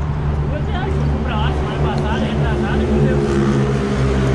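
Heavy truck diesel engine running steadily, growing a little louder near the end, with faint voices talking under it.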